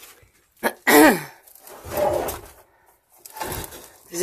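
A person's non-speech vocal sounds: a short groan that falls in pitch about a second in, after a brief click, then heavy breathy exhalations.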